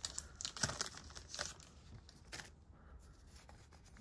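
A trading card pack wrapper being torn open and crinkled, a few short crackles in the first couple of seconds, then fainter rustling of the cards.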